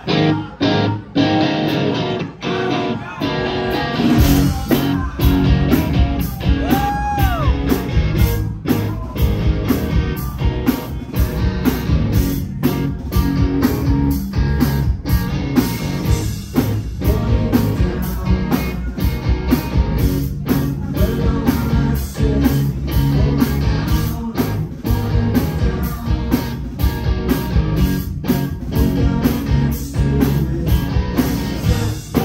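A live rock band, recorded in the room, starting a song. An electric guitar plays stop-start chords alone, then drums and bass come in about four seconds in and the full band plays on loudly.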